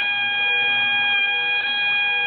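Bagpipes playing one long held chanter note over the steady drones.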